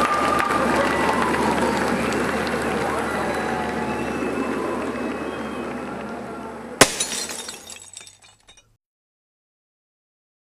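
A live concert crowd's cheering and chatter, slowly fading, is cut off about two-thirds of the way through by one sharp crash: a television's glass screen smashed by a sledgehammer. Glass shards tinkle for a second or so after the blow.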